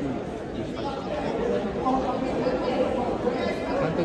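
Indistinct overlapping voices and chatter echoing in a large hall.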